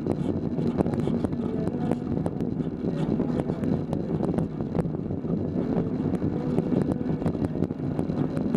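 Alleweder velomobile rolling along a paved path. Its aluminium shell carries a steady rumble of tyre and drivetrain noise, with frequent small irregular clicks and rattles.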